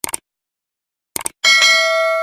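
Subscribe-button animation sound effect: a short click, then a quick double click about a second later, followed by a bright notification bell chime that rings on steadily.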